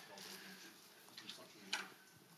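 Quiet room tone with a faint, distant voice speaking off the microphone, and a soft click near the end.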